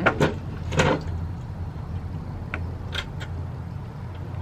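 Lid of a red metal-framed glass lantern being closed and latched shut: a few sharp clicks and knocks near the start and about a second in, then lighter ticks later on, over a steady low rumble.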